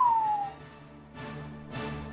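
A single whistle gliding down in pitch, ending about half a second in, followed about a second in by outro music with a steady beat.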